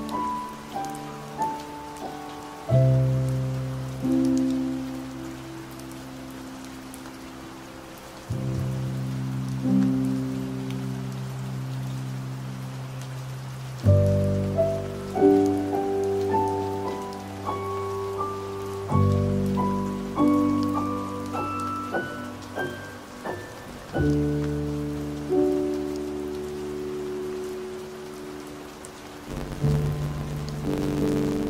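Slow, gentle piano music over steady rain noise. Long held chords give way, from about the middle, to runs of notes climbing higher, then settle back to chords.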